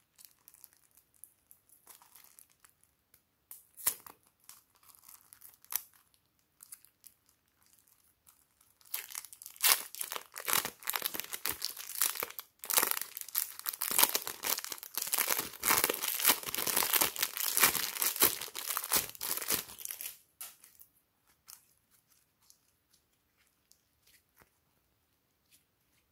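Thin plastic piping bag crinkling and tearing as soft clay is squeezed out of it by hand. There are faint scattered crackles at first, then a dense run of crackling from about nine seconds in until about twenty seconds in, after which it dies back to a few small crackles.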